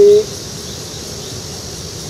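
Steady outdoor background: a continuous high-pitched insect drone over a low, even rumble.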